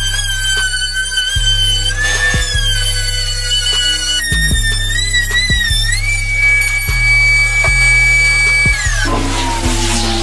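Background music with a steady beat over the high whine of a table-mounted wood router. The whine shifts in pitch as the bit cuts, and it slides down as the router winds down near the end.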